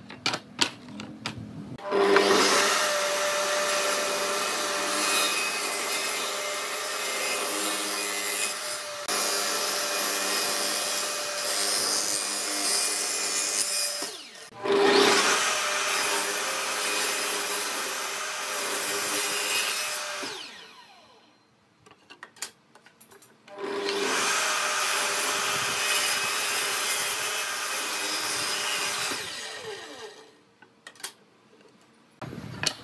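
Table saw ripping pine boards: the motor runs with a steady whine under the noise of the blade cutting through the wood. There are three long cuts, a short break before the second one a little before halfway, and a quieter pause with a few knocks about three-quarters through. A few wooden knocks come first as the boards are set down.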